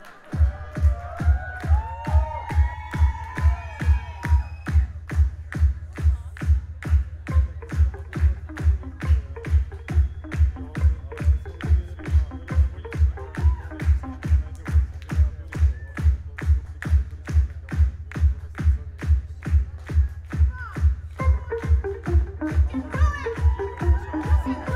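Live band playing an electronic dance song: a steady kick-drum beat about twice a second, with a gliding melody over it near the start and again near the end.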